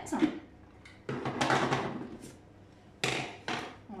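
Plastic clicks, rattles and knocks as the lid of a Tupperware Extra Chef hand chopper is unlatched and lifted off its bowl, with the sharpest knocks near the end.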